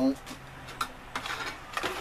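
Plastic bag crinkling and rustling, with light clicks and clinks of metal tins being handled, starting about a second in.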